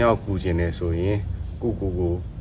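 A steady, high-pitched insect chorus, such as crickets, running without a break behind a man's speech.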